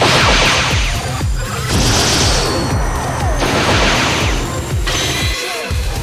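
Sound-effect energy-blaster shots and impacts: four loud bursts about a second and a half apart, over background music with a steady low beat.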